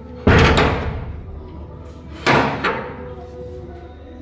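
A wooden door banging shut hard twice, about two seconds apart, each bang ringing out briefly, with a smaller knock just after the second.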